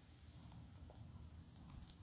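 Near silence: a faint low background hum with a thin, steady high-pitched tone.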